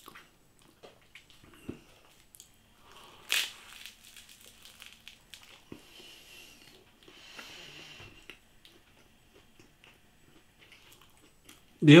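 A person chewing a mouthful of pizza with the mouth closed: soft mouth noises with scattered small clicks, and one louder smack about three and a half seconds in.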